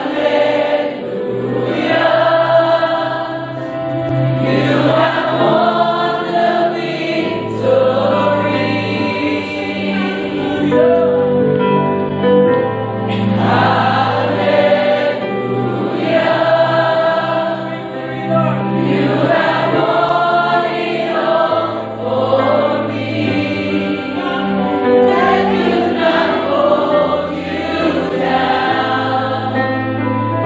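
Live worship music: many voices singing a slow worship song together over a band led by acoustic guitar, with long held bass notes that change every few seconds.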